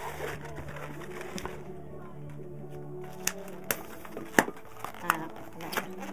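Latex modelling balloons being twisted and handled, giving a few sharp squeaks and snaps, the loudest about four and a half seconds in, over steady background music.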